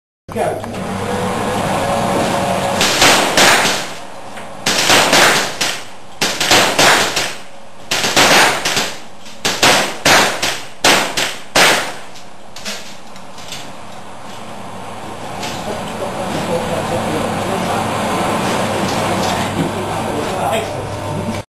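Lever-action (underlever) gallery rifle firing a rapid string of shots, more than a dozen in quick groups of two to four, from about three seconds in until about twelve seconds in.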